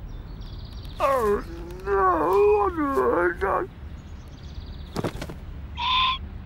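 A cartoon character's wordless vocalizing: a voice groaning and wailing, rising and falling in pitch, for about two and a half seconds, followed by a sharp click and a short whistle-like tone near the end.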